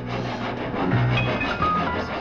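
An upright piano being played while an all-purpose saw cuts into its wooden case: a steady scraping noise from the saw over held piano notes.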